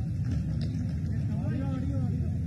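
Indistinct voices over a steady low rumble of outdoor background noise.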